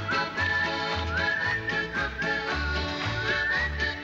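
Folk-schlager band playing with no singing: a high whistled melody with sliding notes leads over accordion chords and a double bass thumping an alternating bass line about twice a second.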